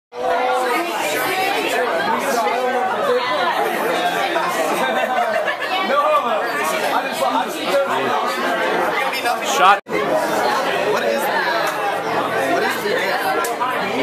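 Many people talking at once in a crowded room: a dense babble of party chatter with no single voice standing out. It cuts out abruptly for an instant about ten seconds in, then resumes.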